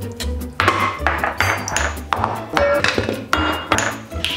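Background music with a steady beat, over sharp metallic clinks of a wire whisk against an enamel pot as thickening polenta is stirred.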